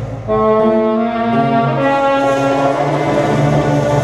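Live band music: a saxophone plays a melody of long held notes, coming in about a third of a second in, over a steady bass line.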